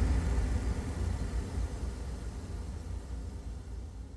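The closing tail of a TV show's intro jingle: a noisy low rumble left after the final hits, fading steadily away.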